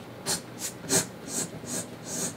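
A person making a run of short hissed 'tss' sounds into a studio condenser microphone, about three a second, testing how much of the high end the mic picks up, since they hear its response tail off a little at the top.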